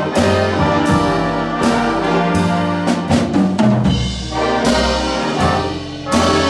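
Jazz big band playing a brass-led passage of a ballad arrangement: trumpets, trombones and saxophones in full harmony over upright bass and drums, with a few drum hits a little past the middle.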